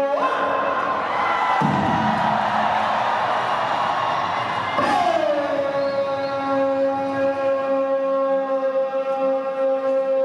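A bugle, played into a microphone over loudspeakers, holding long sustained notes: it jumps up to a higher note at the start, slides down about five seconds in, and holds that lower note steadily. A crowd cheers under it for a few seconds in the middle.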